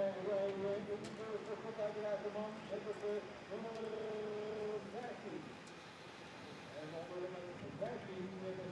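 A voice talking indistinctly, quieter than the commentary, with no clear words; it fades about five seconds in.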